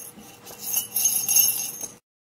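Bright jingling of small bells, swelling about half a second in and cutting off suddenly at the end.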